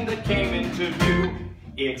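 Live jazz accompaniment with plucked upright bass playing an instrumental fill between sung lines; it thins out and dips in level about a second and a half in, just before the singer's voice comes back in.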